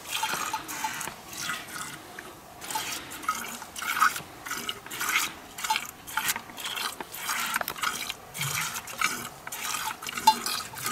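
A cow being milked by hand: streams of milk squirting into a narrow-necked pot, about two spurts a second in a steady rhythm.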